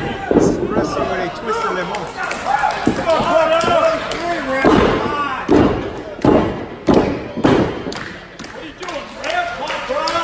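Heavy thuds on a wrestling ring's canvas, a run of about five roughly two-thirds of a second apart in the middle, among the voices and shouts of a small crowd.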